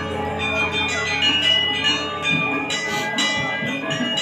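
Balinese gamelan orchestra playing: bronze metallophones and gongs struck in quick, dense patterns of ringing metallic notes.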